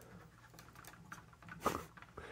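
Faint small clicks and ticks of plastic Bionicle ball joints and limb pieces being moved into position by hand, with a brief louder noise near the end.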